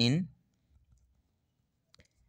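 A man's voice finishes a word at the very start, then a few faint, light ticks of a ballpoint pen writing on notebook paper.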